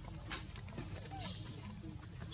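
Faint short squeaks and chirps of macaques, one rising and falling about a second in, over a steady low rumble with a few brief clicks.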